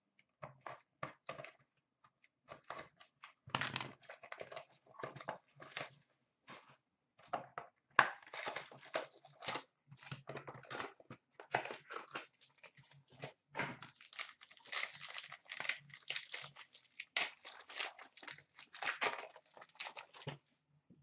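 A hockey card hobby box being opened and its packs torn open by hand: irregular bursts of tearing and crinkling wrappers with light cardboard knocks, busiest around 4 s, 8–10 s and 14–19 s.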